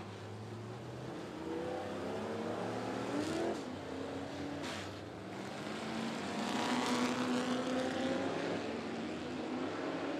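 Dirt-track race car engines revving as the cars drive past. The engine pitch climbs, falls away about three and a half seconds in, then climbs again to its loudest around seven seconds in.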